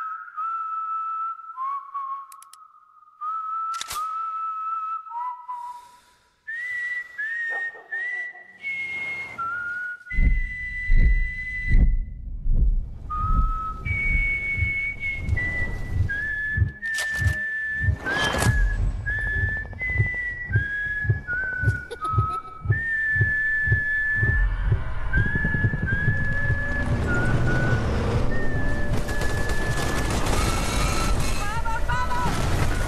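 A slow whistled melody, one clear note at a time stepping up and down, over a film trailer's soundtrack. From about a third of the way in, heavy thuds and gunfire of a bombardment come in beneath the continuous whistling, building to a dense rumble near the end.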